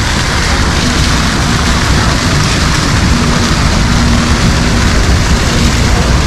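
Fountain water pouring from a giant suspended-tap sculpture and splashing into its basin: a loud, steady rush and splash.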